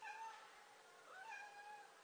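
Domestic cat meowing faintly, twice: a short meow at the start, then a longer one about a second in that rises and then holds its pitch.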